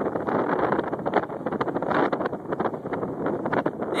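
Skateboard rolling at speed over asphalt: a continuous rough rumble of the wheels, with wind buffeting the microphone.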